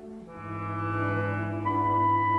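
Instrumental music with sustained held chords. A new chord swells in about half a second in, and a high held note joins near the end.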